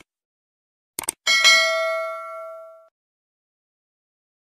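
Sound-effect clicks: one at the start and a quick double click about a second in. Then a bright notification-bell ding rings out and fades over about a second and a half.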